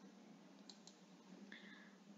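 Near silence, with a couple of faint clicks from a computer mouse under a second in.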